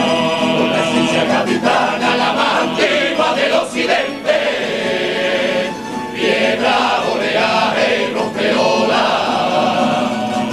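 A large male carnival chorus (a Cádiz coro) singing a tango in full voice over a plucked-string band of Spanish guitars and lutes, continuous and steady throughout.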